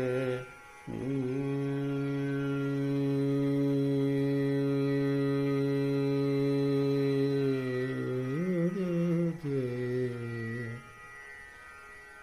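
A male voice singing Dhrupad alap. After a short break about a second in, he holds one long steady note, bends the pitch up and back down near the ninth second, and stops about a second before the end.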